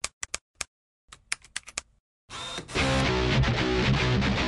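Keyboard typing clicks, about a dozen quick keystrokes in two short runs. Loud guitar-driven music comes in near the three-second mark.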